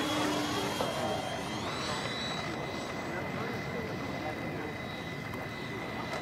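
Four electric ducted fans of a Freewing AL-37 RC airliner whining as it taxis: a steady high whine, with a second tone gliding upward about two seconds in.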